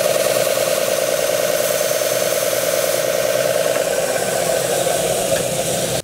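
Jet combination belt and disc sander running steadily with a block of wood held against its horizontal sanding belt, together with a shop dust collector running.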